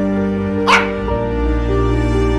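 Gentle background music with long held notes, and a single short dog bark laid over it a little under a second in.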